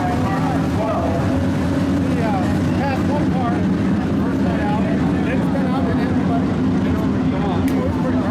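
A pack of IMCA modified dirt-track race cars' V8 engines running together around the oval, a steady drone with pitches wavering up and down as drivers work the throttle. Voices are heard over the engines.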